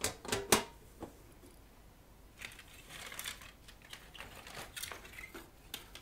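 A sheet-metal equipment cover being handled and set on the chassis of a vintage digital delay/reverb unit: a few sharp clacks in the first second, then quieter scraping and light tapping as it is shifted into place.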